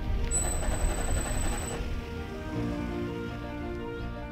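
Heliostat's electric drive motor running briefly to make a small tracking adjustment to the mirror. It gives a high-pitched whine for about a second and a half near the start, over background music.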